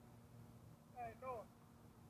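A faint, distant voice calls out two short syllables about a second in, each falling in pitch. Beneath it is a steady low hum in otherwise near-silent surroundings.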